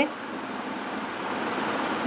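Steady, even hiss of indoor background noise, growing slightly louder, with no distinct event in it.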